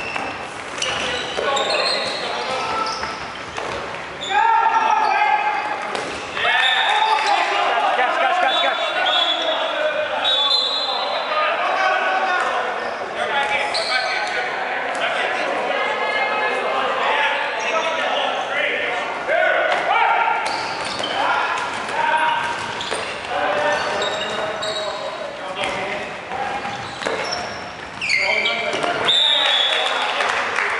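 Dodgeball players shouting and calling out to each other over one another, with dodgeballs thumping and bouncing on the wooden court floor at intervals. The sound echoes in a large sports hall.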